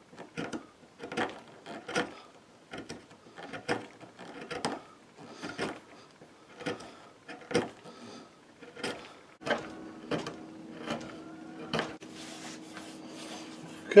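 Small hand gouge cutting into a wooden rifle buttstock, a run of short scraping cuts about once or twice a second as the recess for a patch box is pared out. A faint steady hum comes in about two-thirds of the way through.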